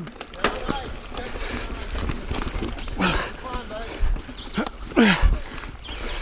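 Niner Jet 9 RDO mountain bike climbing a dirt trail: tyres on loose ground with clicks and rattles from the bike, and the rider's short voiced exertion sounds, one about three seconds in and a lower falling one about five seconds in.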